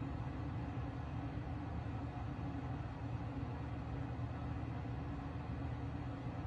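Steady low background rumble with a hiss over it, unchanging throughout, with no distinct knocks or clicks.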